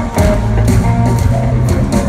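Live band jamming at full volume, with a steady drum beat and cymbal hits over bass and electric guitar, heard from the audience in a large arena.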